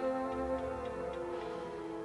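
The last held chord of a TV station's ident jingle, sustained and slowly fading out.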